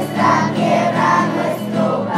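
A group of children singing together to a strummed acoustic guitar.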